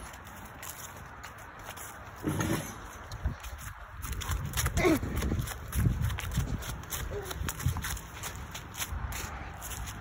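Footsteps walking quickly over grass and fallen leaves, a run of irregular dull thumps in the middle, mixed with the bumping of a handheld phone.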